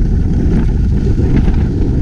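Wind buffeting a small action-camera microphone during a fast ski run, a loud, steady, low rumble. Faint scraping of skis on snow runs underneath it.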